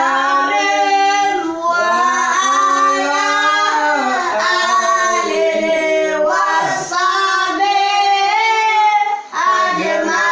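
Young children singing a salawat, an Islamic devotional song praising the Prophet, together with the man leading them, unaccompanied. It is sung in phrases of about two and a half seconds with short breaks for breath between them.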